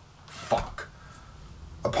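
Brief handling noise: a short rustle with a sharp click about half a second in and a lighter click just after. A man's voice starts up just before the end.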